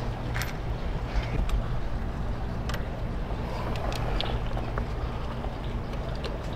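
A few light clicks of metal parts being handled as a high-pressure fuel pump is fitted by hand onto an engine, over a steady low background rumble.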